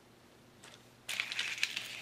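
Crinkling and rustling of artificial green leaves as they are picked up and handled, starting about a second in.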